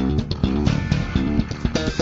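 Ibanez ATK electric bass played along with a full rock-band recording: a busy line of short, quickly changing low notes over the band's guitar and beat.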